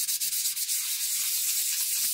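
A small chert fossil stone rubbed quickly back and forth on wet 1000-grit wet/dry sandpaper, giving an even, high scratching hiss of rapid strokes.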